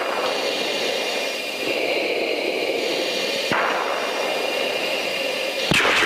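Steady rushing hiss of an open aircraft radio channel with in-flight engine and air noise behind it. A click about halfway through changes the hiss, and another click comes near the end as the next transmission is keyed.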